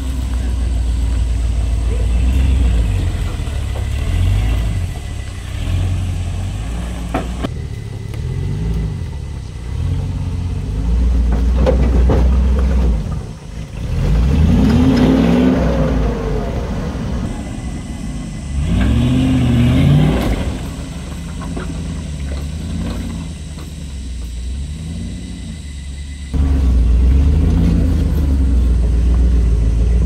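Land Rover Discovery 1's V8 engine working hard as it crawls over wet rock, with its low running note broken by several rev surges that rise and fall in pitch, two of them strong ones in the middle.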